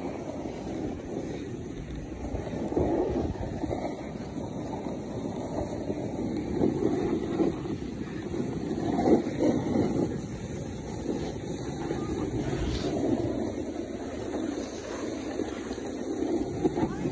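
Snowboard sliding down a groomed slope: a continuous scraping rush of the board on the snow that swells and fades with the turns, with wind buffeting the microphone.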